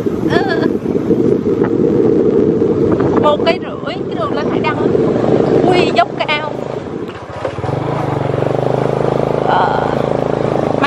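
Motorbike engine running as it climbs a steep road, with wind rumbling on the microphone. About eight seconds in the wind drops and the engine's steady hum comes through clearly.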